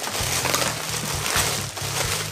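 Rustling and crinkling of packaging as the hair dryer brush is handled and pulled out, over low steady background music.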